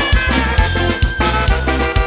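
Live band playing a medley: a steady beat on bass and drum kit, with one long held high note that slides slightly down and fades about a second and a half in.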